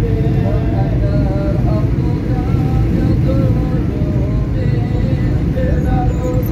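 Steady engine and road noise of a car driving, with a voice singing over it in held, gliding notes.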